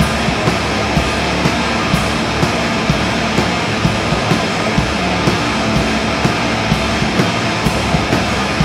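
Heavy metal band playing live at full volume: distorted electric guitar and bass guitar through amplifiers over drums. Sharp drum hits land about twice a second in a steady beat.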